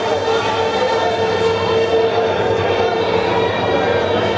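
A loud, steady drone of several held tones, with crowd chatter underneath.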